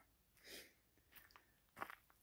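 Near silence, broken by a soft faint rustle about half a second in and a few faint brief ticks later.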